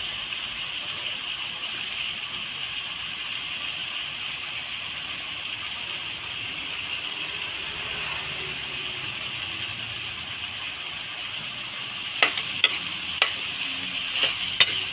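Ground meat and shrimp sizzling steadily in hot oil in a metal wok. Near the end a metal ladle starts knocking and scraping against the wok as the stir-fry is stirred.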